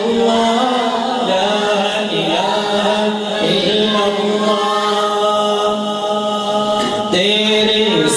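A man singing a naat (Urdu devotional poem in praise of the Prophet) solo into a microphone, in a slow melismatic style with long held notes. A new phrase begins about seven seconds in.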